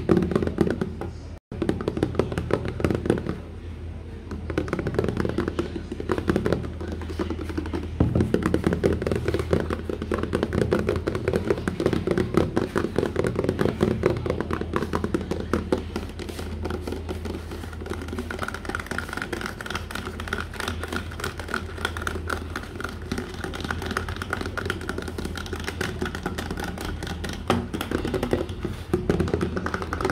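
Fast fingernail tapping on a plastic trigger spray bottle and its trigger head, a dense run of quick light taps that keeps going throughout.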